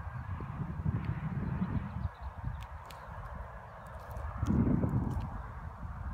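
Wind rumbling unevenly on the microphone, swelling in a stronger gust about four and a half seconds in, with a few faint clicks.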